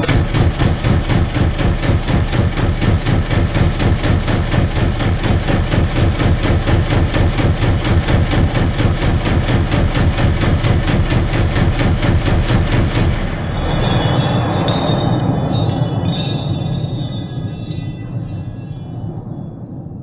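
Belt-fed ARES Defense Shrike 5.56 mm AR-style rifle firing a long rapid string from a linked belt, about four to five shots a second, for roughly thirteen seconds. The shots then stop and a rumbling echo fades away.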